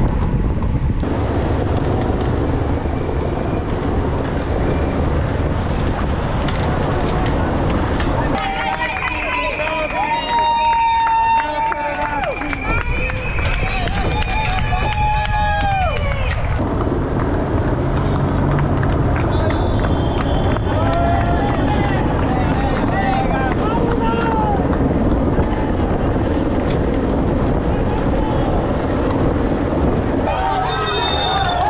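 Steady wind and tyre noise on a camera mounted on a racing bicycle climbing among other riders. Roadside spectators shout long drawn-out calls of encouragement, in one stretch about a quarter of the way in and again past the middle.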